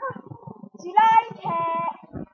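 A girl's voice singing two short held notes about a second in, the second one steady for about half a second.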